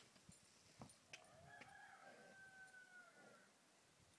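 A rooster crowing once, faintly: one long call of about two seconds that holds its pitch and then trails off. A few faint clicks come just before it.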